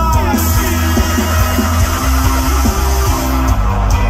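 Live reggae rock band playing loudly, with bass, drums and electric guitar. A bright high hiss joins the music about a third of a second in and drops away near the end.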